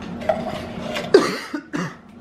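A husky giving a brief whine, then two short barks, each falling in pitch, the first the loudest.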